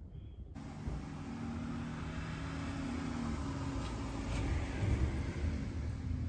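Low motor rumble with a steady hum, growing gradually louder over several seconds.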